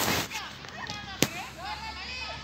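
Players calling and shouting to each other during a small-sided football game, with one sharp smack of a ball being kicked a little past a second in. A short burst of noise opens the stretch.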